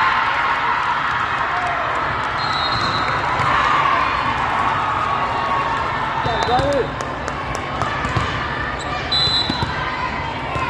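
Indoor volleyball hall: voices of players and spectators calling and chattering, with sharp ball contacts and sneaker squeaks on the sport court. Brief high whistle-like tones sound a few times.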